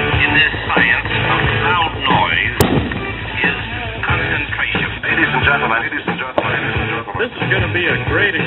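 Music with voices over it, cut off above 4 kHz like sound from a radio, with a single click about two and a half seconds in.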